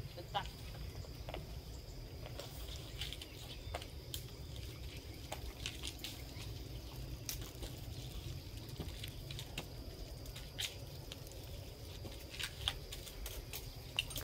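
Quiet outdoor ambience: a steady low rumble with a faint high hum and scattered light clicks and ticks. No chainsaw is running.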